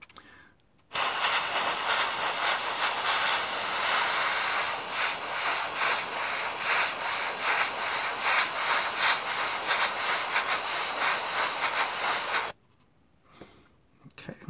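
AK Interactive Basic Line 0.3 mm airbrush spraying paint: a steady hiss of air and atomised paint that starts about a second in and cuts off sharply near the end, when the trigger is released.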